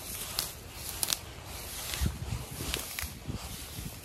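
Box hedge foliage rustling and crackling as vetch is pulled out of it by hand, with a few small sharp snaps of stems breaking.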